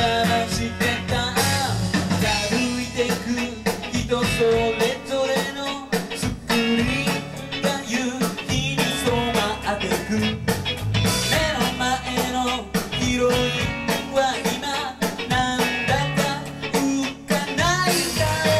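Live rock band playing electric guitars and drums, with a man singing lead.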